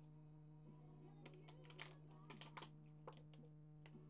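Near silence over a steady low electrical hum, broken about a second in by a quick run of light clicks, followed by a few single clicks near the end.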